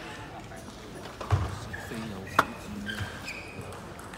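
Table tennis hall ambience between points: scattered voices, a dull thump about a second in and a single sharp click, the loudest sound, a little past halfway.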